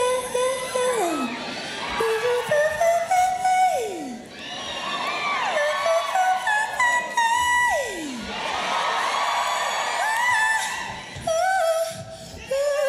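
A woman's solo singing voice, live through a microphone, holding long notes that slide steeply downward about three times, with little band behind it. A crowd cheers and screams between the phrases, loudest near the end.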